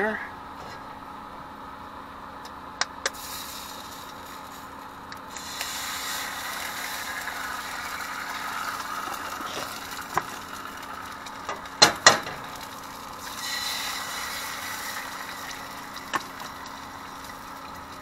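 Eggs frying in a hot pan on a gas stove. A couple of sharp eggshell cracks come about three seconds in, then sizzling as the first egg goes in, and two louder cracks about twelve seconds in as the second egg is added. A steady low hum runs underneath.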